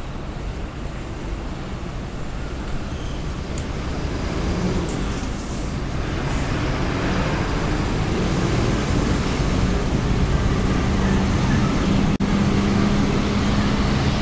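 Street traffic on a city road, with a heavy vehicle's engine hum and low rumble growing steadily louder as it comes close.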